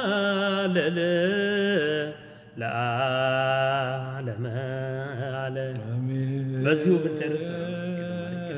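A man's voice singing Ethiopian Orthodox chant: long held, wavering notes that step between pitches, broken by a short breath about two seconds in.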